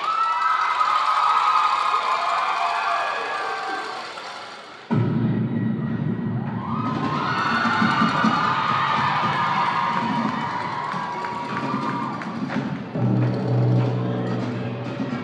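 Live show-choir music: sustained high notes fade away over the first four seconds, then the full band comes in suddenly about five seconds in with drums and bass under held melody lines. A heavier bass entry follows near the end.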